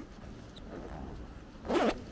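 The zipper of a fabric lumbar pack being pulled open by hand: a faint rustle of handling, then one quick, loud rasp of the zip near the end.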